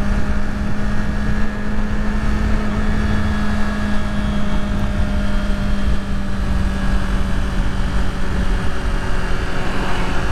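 Kawasaki Z400's parallel-twin engine running at steady revs with rushing wind, as the bike rolls down a steep grade with little throttle, using engine braking.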